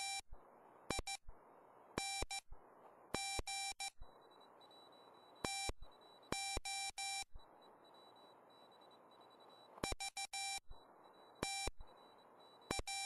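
Morse code (CW) sidetone from a RockMite 40 QRP transceiver keyed by a paddle: a steady mid-pitched beep sent in short groups of dots and dashes, with pauses between characters and words. Receiver hiss fills the gaps, and a faint steady high whistle comes in about four seconds in.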